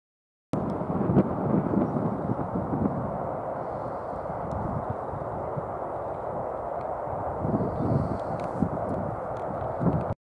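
Wind rumbling and rushing across the microphone, rising in gusts about a second in and again near the end.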